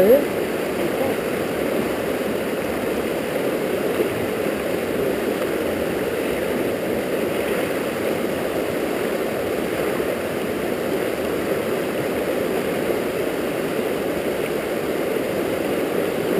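A fast river running high and turbulent over rocks: a steady, even rush of water.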